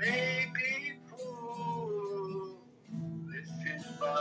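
A singer holding two long notes of a worship chorus, the second sliding down at its end, over a strummed acoustic guitar.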